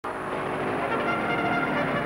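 Music played by brass instruments, steady held notes.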